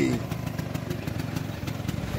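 Small motorcycle engine idling steadily.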